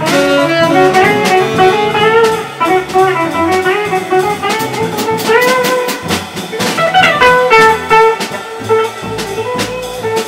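Live jazz: a hollow-body archtop electric guitar plays running single-note lines over walking double bass and a drum kit with cymbals ticking throughout.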